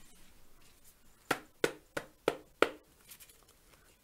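Five sharp knocks, about three a second, rapped on a deck of tarot cards to cleanse it.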